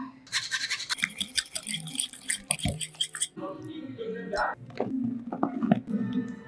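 A fork stirring pumpkin purée, ricotta and parmesan in a glass bowl, with fast scraping and clinking against the glass for about three seconds. It then gives way to softer, duller mixing sounds with a few sharp clicks.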